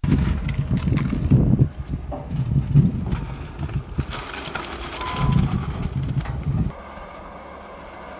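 Landfill heavy equipment, a steel-wheeled trash compactor and a tipping garbage truck, running with a loud, uneven rumble and scattered knocks. About three-quarters of the way through it drops suddenly to a quieter steady engine hum.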